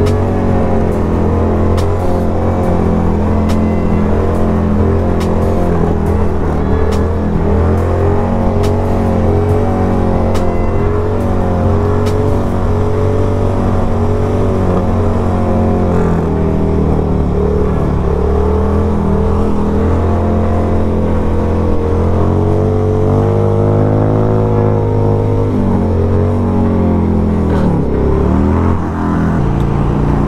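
The air-cooled V-twin of a 1994 Harley-Davidson Sportster 1200 with an aftermarket exhaust pipe, running while the bike is ridden. Its engine speed rises and falls several times in the second half, and it drops briefly near the end.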